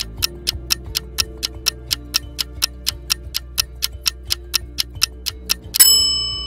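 Countdown timer sound effect: even clock-like ticking, about four ticks a second, over soft background music, ending near the end with one bright ringing chime as the time runs out.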